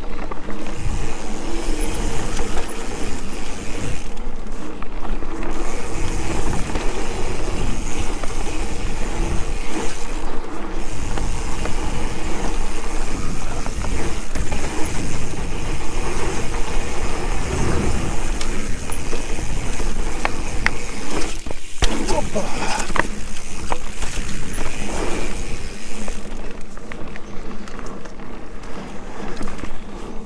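Mountain bike riding a bumpy dirt forest trail: a constant rumble and rattle of tyres and bike over the ground, with occasional sharp knocks, and wind buffeting the chest-mounted camera's microphone.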